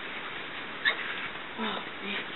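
A domestic turkey's short calls: a sharp cluck about a second in and a lower, brief call near the end.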